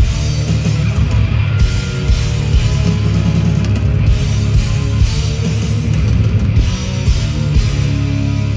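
Live heavy rock band playing loud through a festival PA, with electric guitars and a drum kit, recorded from the crowd.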